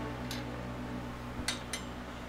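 A few faint clicks from the TIDRADIO TD-H8 handheld radio being gripped and handled, two close together about a second and a half in, over a steady low room hum.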